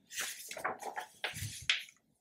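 Paper instruction booklet page being turned and pressed flat, a rustle in several swells.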